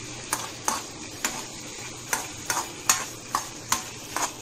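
A metal spoon knocking and scraping against a wok about eight times while stirring chicken and pumpkin pieces frying in oil, over a steady, quiet sizzle.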